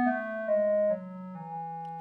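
Electronic keyboard playing the lower notes of a descending E major scale, stepping down note by note to the low E. The last notes are quieter and the final one is held.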